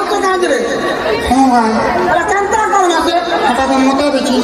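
Voices singing a repeated phrase of a song played for the dance, with held and gliding notes and several voices overlapping.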